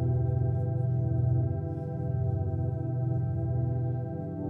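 Slow, droning live instrumental music: a sustained, distorted electric guitar through effects, with a strong low drone pulsing rapidly underneath and held notes that shift slowly above it.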